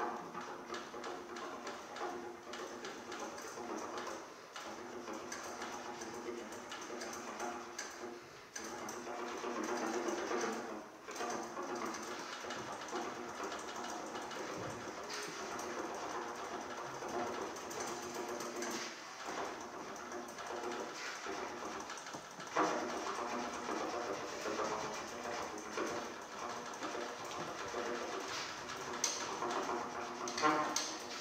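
Trumpet played in free improvisation with extended technique: held, buzzy notes with a fast flutter running through them, broken by short breaths. The playing grows louder about two-thirds of the way through.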